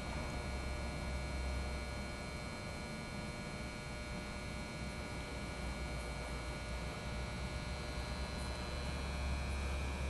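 Steady low hum with thin, faint high-pitched whining tones over it: the constant background drone of a large indoor sports hall.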